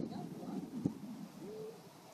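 Faint murmured voices, then a brief low hoot-like vocal sound that rises and then holds, near the end.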